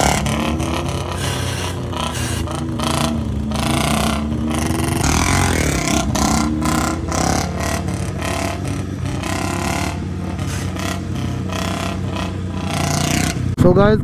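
Motorcycle engines running and revving while a Royal Enfield Bullet 350 single-cylinder is held up in a wheelie, with a chasing sport bike's engine and wind noise at the microphone.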